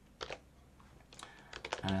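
A few computer keyboard keystrokes, short sharp clicks coming singly at first and then in a quick cluster in the second half.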